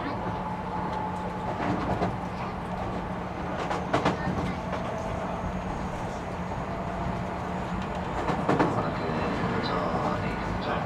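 Keio 1000 series electric train running between stations, heard inside the car: a steady hum and rolling wheel noise, with a faint whine above it. Wheels clack over rail joints a few times, loudest about four seconds in and again near the end.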